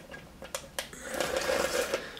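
Two short sharp clicks, then about a second of rustling handling noise.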